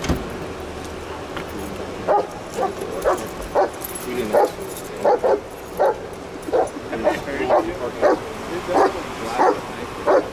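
A dog barking over and over, about twice a second, starting about two seconds in. A single short knock comes right at the start.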